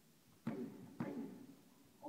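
Two sharp smacks of strikes landing on Thai pads, about half a second apart, each ringing briefly in the hall.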